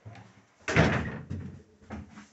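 A wooden door bangs once, loud and sudden, about two-thirds of a second in, followed by two lighter knocks of wood, in a small wood-panelled room.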